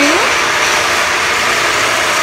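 Motorised floor-stripping machine running steadily with a constant motor hum, working old flooring glue off the floor.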